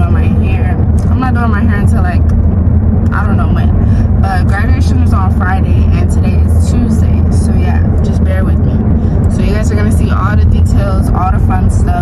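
Steady low rumble of road and engine noise inside a moving car's cabin, with a woman talking over it.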